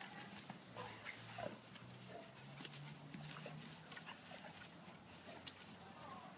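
Faint sounds of a Yorkshire terrier and two larger dogs play-fighting on grass: scattered scuffles and a few brief high whines.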